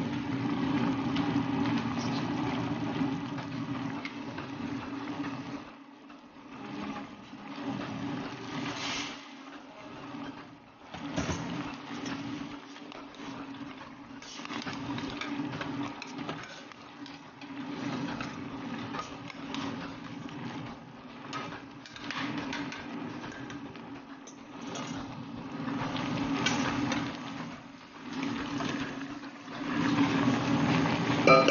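Chicken pieces simmering and sizzling in soy sauce in a stainless steel pot on the stove, cooking because the meat is still raw, over a steady low hum.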